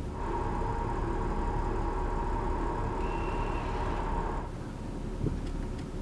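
An Audi's electromechanical power-steering motor whirring as it turns the driverless car's steering wheel, over the low rumble of the car rolling slowly. The whir starts just after the beginning and cuts off about four and a half seconds in.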